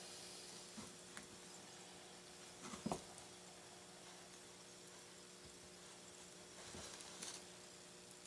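Near silence with a faint steady hum. About three seconds in there is one brief soft sound, and near the end there are faint small scratching sounds as fingers peel the cut plastic insulation back from a stranded copper wire.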